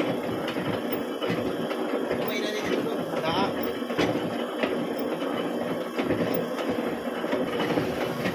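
Machine tool running as a tool bar works in the bore of a gear blank held in a dividing-head chuck, cutting internal gear teeth, with repeated knocks over a steady mechanical noise. Voices talk in the background.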